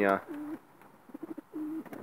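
Domestic pigeons cooing: a short, low, steady coo just after the start and another near the end, with a few soft pulsing notes between them.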